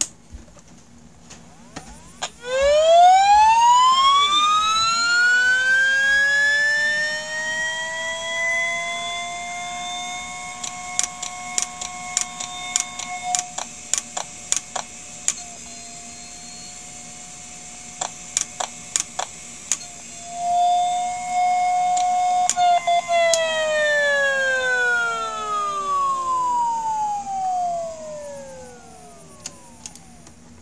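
Electromagnetic hum of an IBM Deskstar ('DeathStar') 7200 RPM hard drive's spindle motor and head voice coil, picked up by a telephone-listener induction coil. A whine rises in pitch for several seconds as the motor spins up, then holds steady while a run of sharp clicks sounds. About three-quarters of the way through, the whine falls away as the motor slows. It is the sound of a failing drive that spins up but cannot load its firmware, so the heads reset and the motor winds down to try again.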